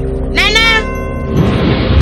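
Film soundtrack: a steady background music bed, a short high cry that rises then falls in pitch about half a second in, then from about a second and a half a loud rushing noise swells as a magical dust-burst effect begins.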